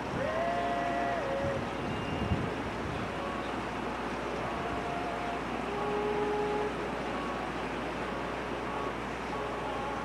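Steady background noise, an even hiss and rumble, with a few faint, brief tones over it near the start and about six seconds in.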